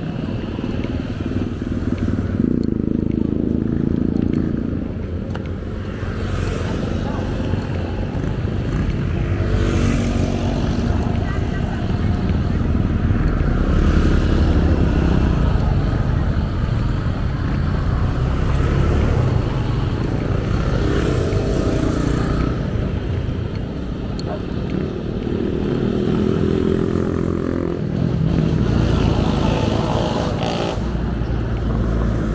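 Roadside traffic: motorcycles and other light vehicles passing one after another, each engine swelling and fading as it goes by, over a steady low road rumble.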